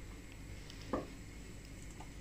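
Faint room tone with one soft knock about halfway through: the plastic blender jar being set down on the kitchen counter.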